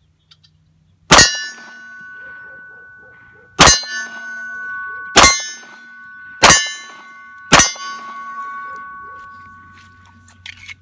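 Five .45 ACP pistol shots from a Ruger SR1911, fired at a quickening pace over about six and a half seconds, each followed by the ringing of a struck AR500 steel target plate that carries on between the shots. The shots are first-test handloads, and all fire and cycle the pistol normally.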